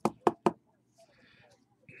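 Three sharp knocks in quick succession, all within about half a second, as a box of trading cards is handled and set against the tabletop.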